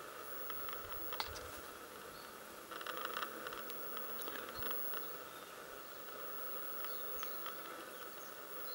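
Faint, steady insect hum in the bush, with scattered small clicks and a short burst of crackling about three seconds in.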